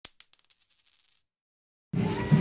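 Short logo sound-effect sting: a sudden high ringing tone over a quick run of ticks, dying away after about a second.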